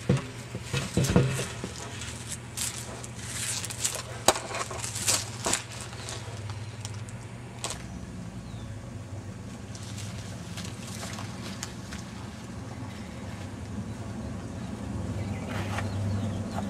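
Dry leaf litter crunching and crackling in a series of short, irregular crunches, busiest in the first six seconds and then only occasional, over a steady low hum.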